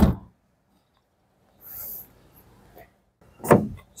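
Manual tailgate of a Jetour X70 crossover pushed shut by hand, landing with one heavy thud as it latches right at the start. A faint hiss follows, and another short sound near the end.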